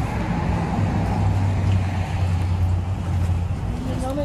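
Motor vehicle engine running with a steady low hum, strongest through the middle, over outdoor traffic noise.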